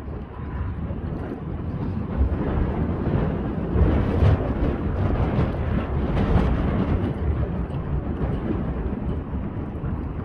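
Wind buffeting the microphone: a gusty low rumble that swells through the middle.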